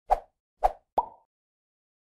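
Logo-intro sound effect: three quick pops within about a second, the last one trailing a short ringing tone.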